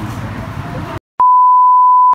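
About a second of low room noise, then a sudden cut to silence and a loud, steady, unwavering test-tone beep of the kind played over colour bars, used here as an editing transition.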